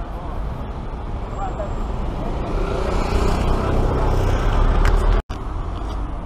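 Street traffic noise: a steady low rumble in which a motor vehicle's engine hum grows louder from about halfway through. The sound drops out for an instant about five seconds in.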